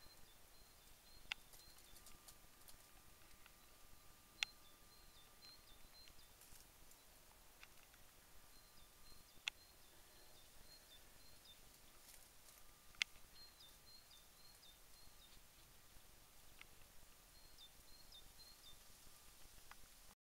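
Quiet woodland with faint bird chirping: short phrases of high notes repeated every few seconds. A few sharp clicks stand out, four in all.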